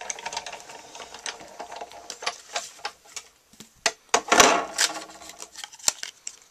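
Stampin' Up! Big Shot die-cutting machine being hand-cranked, rolling a sandwich of plastic cutting plates and a scalloped circle die through its rollers to cut cardstock: a dense run of clicks over a steady hum for about three seconds. Then a few separate clicks and a louder scrape of plastic about four seconds in.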